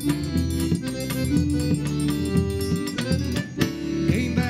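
Forró trio playing an instrumental passage: a Scandalli piano accordion holds the melody over a steady zabumba drum beat and a ringing triangle.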